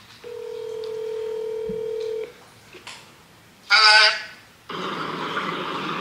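Phone ringback tone on an outgoing call over speakerphone: one steady ring lasting about two seconds. About four seconds in there is a brief vocal sound, followed by a steady hiss of the open line.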